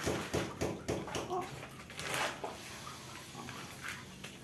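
Hands working loose potting soil in a plastic plant pot: short scraping and rustling sounds in the first second or so, then a brief hiss of soil moving about two seconds in.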